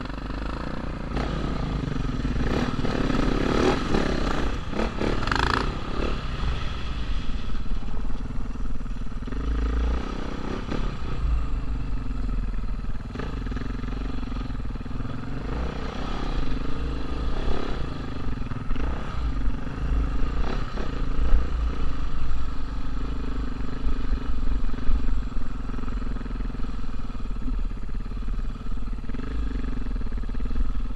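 Dirt bike engine running under load, its note rising and falling with the throttle.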